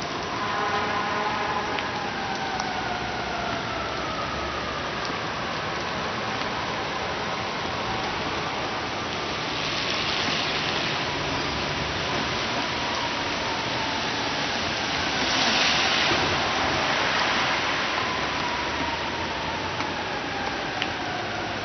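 Steady rain falling on a wet street and puddles. Two louder swells of tyre hiss come from cars passing on the wet road, about halfway through and again about three-quarters of the way through. Faint falling whines are heard near the start and the end.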